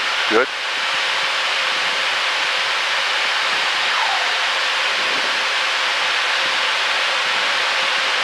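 Steady rushing hiss of the L-39's turbofan engine and high-speed airflow heard inside the cockpit, the jet at 103% power building speed in a shallow dive toward 340 knots.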